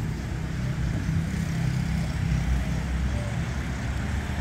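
Motor vehicle engine running steadily on the street, a low continuous hum.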